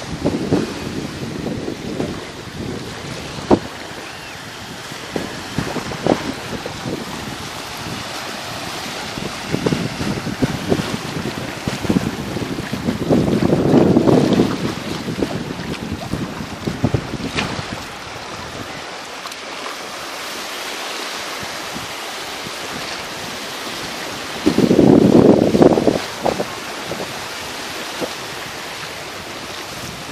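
Small waves washing onto a sandy sea shore, with wind buffeting the microphone. The rumble swells louder twice, for a second or two near the middle and again near the end.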